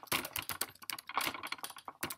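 Typing on a computer keyboard: a quick, uneven run of key clicks as words are typed.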